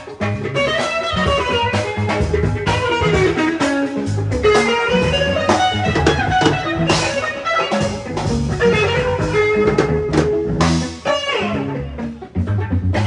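Live band music: electric guitar playing melodic lines over a drum kit and a steady rhythmic low end.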